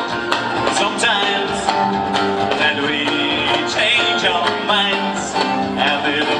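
Live country-rock band music: a steel-string acoustic guitar strummed over a drum kit, in an instrumental passage with a wavering lead melody line above.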